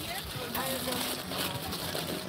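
Aluminium foil crinkling as a sandwich is folded and wrapped in it by hand: an irregular, fairly quiet crackle with faint voices behind it.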